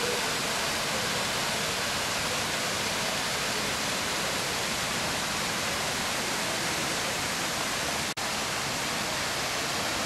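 Water from an artificial rock waterfall pouring in several streams over boulders into a pond, a steady rushing. The sound drops out for an instant about eight seconds in.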